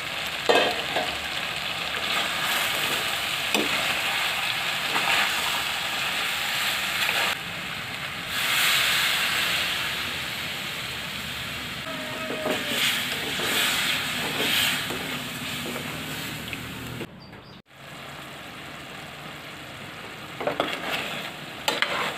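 Chicken pieces sizzling in their juices in a metal pot, a steady hiss with occasional knocks and scrapes of a spatula stirring against the pot. The sizzle drops out for a moment near the end.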